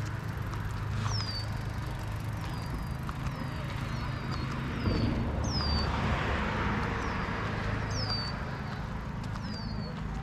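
A bird repeating a short, high whistle that slides downward, every second or so, some notes louder than others, over a steady low rumble that swells about halfway through.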